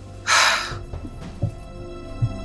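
A single crow caw, a sound effect laid over the scene, about a quarter second in, over steady background music.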